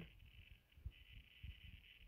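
Near silence: faint room tone with a soft low tick just under a second in.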